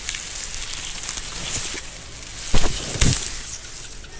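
Dry lemongrass leaves and grass rustling and crackling as a lemongrass stalk is gripped at the base and pulled from the clump, with two heavier thumps about two and a half and three seconds in as it comes free.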